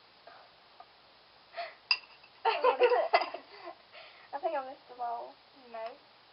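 Girls giggling and making short wordless vocal sounds, loudest a little past the middle. One sharp clink with a brief ring just before two seconds in, a spoon tapping the glass bowl.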